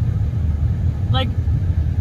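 Steady low rumble of a car heard from inside its cabin, with a woman's single spoken word about a second in.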